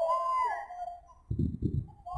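A person's long, high-pitched call, arching up and down in pitch and ending about half a second in, followed by low rumbling noise.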